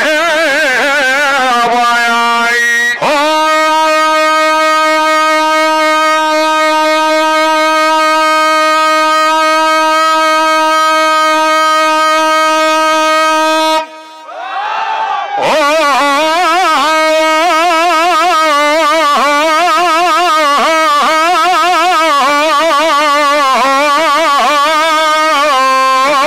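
A man's voice through a microphone and PA, holding one long, steady, piercing note for about ten seconds without words. After a short break near the middle it gives way to a wavering, heavily ornamented sung line in the style of an ataba or mawwal opening, with no clear words.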